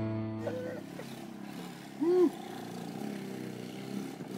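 Music fades out at the start, then a small quad bike's engine runs faintly in the distance. About two seconds in comes a short shouted call that rises and falls in pitch, the loudest sound here.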